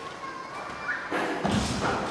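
A basketball thudding about one and a half seconds in, with a short smear of ringing after it.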